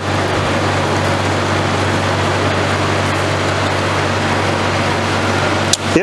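Steady machine noise: a constant low hum under an even hiss, unchanging throughout, with a brief click near the end.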